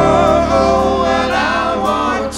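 Live rock band with several voices singing together in harmony over sustained electric guitar and bass chords.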